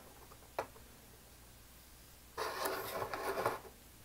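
Hands handling a carbon-nylon quadcopter propeller on a balancer shaft: a single click about half a second in, then a little over a second of rubbing and scraping past the middle as the prop is turned.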